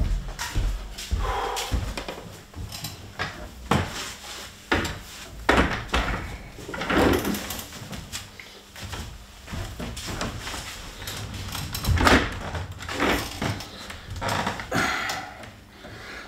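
A wheeled office chair being brought over and set in place: a string of irregular knocks and clunks from its frame and castors, with some shuffling.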